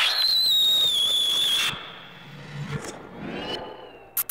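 Tape-collage sound effect: a loud hiss carrying a high whistling tone that glides slightly downward, cut off abruptly before two seconds in, followed by quieter low sounds.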